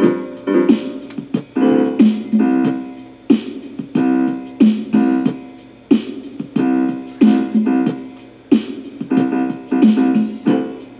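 Keyboard and guitar music: struck chords and notes, each fading after it is played, at a steady unhurried pace.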